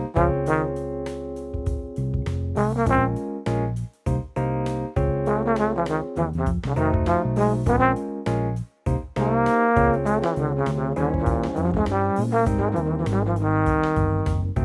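Tenor trombone (a Bach 36) playing a jazz solo line in phrases of quick, articulated notes with a few slides, pausing briefly for breath about four and nine seconds in.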